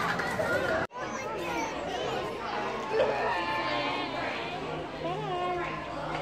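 Children and adults chattering together, with high children's voices standing out. The sound drops out for an instant just before a second in.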